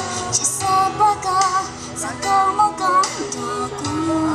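A woman singing into a microphone, amplified, with sustained, wavering melodic notes over musical accompaniment with a regular beat.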